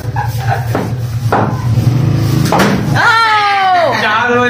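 Three short sharp knocks, about a second apart, over a steady low hum; in the last second a drawn-out voice slides down in pitch.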